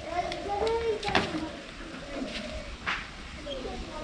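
Quiet, indistinct talking with a couple of sharp clicks.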